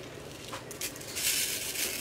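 A small plastic baggie of diamond-painting drills being handled and tipped into a plastic tray: the plastic crinkles and the small drills rattle. It starts about a second in.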